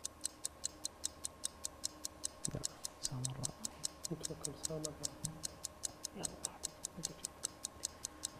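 Quiz-show countdown timer ticking evenly, about four ticks a second, counting down the answer time. Contestants talk quietly underneath.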